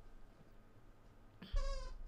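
A dog whining: one short, high-pitched, slightly wavering whine about a second and a half in.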